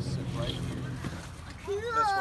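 A young child's high, wavering voice, a squeal or whine, near the end, over a low steady hum that stops about a second in.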